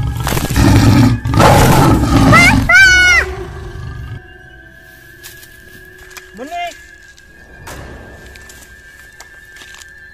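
A tiger roar sound effect, very loud for about the first four seconds and ending in a higher, wavering cry. It then cuts off, leaving a quieter bed with a steady high tone.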